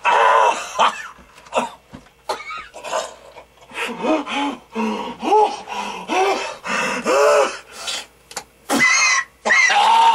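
A man coughing, gasping and groaning, a string of short strained sounds in the voice, as he struggles for breath.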